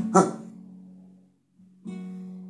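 Classical guitar strummed: a chord rings out and fades over about a second, a brief pause, then another strum near the end.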